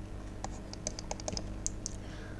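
A quick run of light clicks and taps from a stylus and computer input devices as handwriting goes onto a screen: about a dozen short, sharp clicks starting about half a second in, over a faint steady hum.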